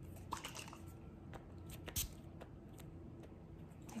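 Close-microphone hair handling: scattered soft crackles and clicks of hair being touched and worked, with one sharper, louder crackle about two seconds in, over a low steady hum.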